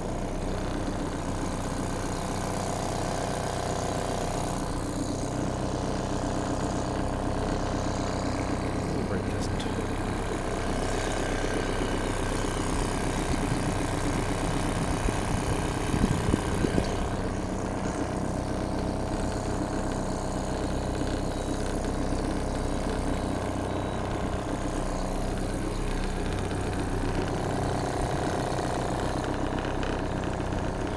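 Auxiliary British Seagull two-stroke outboard running steadily at a slow cruise, with a brief louder patch just past halfway.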